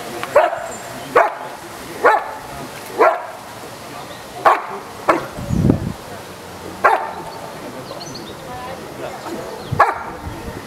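German Shepherd dog barking at a helper in the blind, the hold-and-bark exercise of IPO protection work. It gives about eight sharp barks, roughly one a second, with a longer pause near the end.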